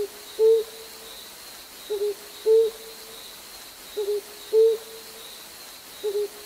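An owl hooting in a repeating pattern, a short broken hoot followed by a longer one, about every two seconds, three times over, with a faint steady high whine behind it.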